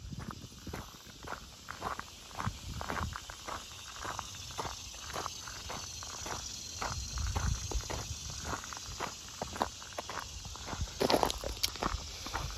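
Footsteps crunching along a gravel road shoulder at an even walking pace, about two steps a second, louder near the end.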